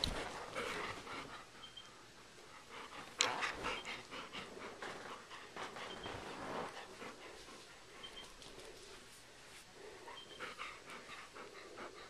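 Adult golden retriever panting right up against the microphone, with rustling as its face and fur brush the camera. A sharp knock comes about three seconds in, and a few faint, short high squeaks recur.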